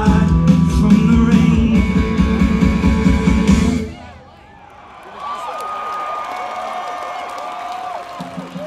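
Live rock band with electric guitars, drums and keyboard playing the last bars of a song, which stops suddenly about four seconds in. After a brief lull, quieter crowd cheering and whistling follows.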